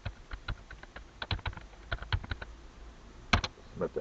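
Typing on a computer keyboard: a string of irregular key clicks, with two sharper clicks close together about three seconds in.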